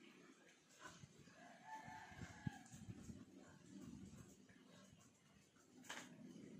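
Near silence: faint room tone, with a soft held tone lasting about a second roughly two seconds in.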